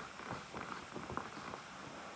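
Faint handling noise: light rustling and a few small taps as objects are moved about by hand. The vacuum is not running.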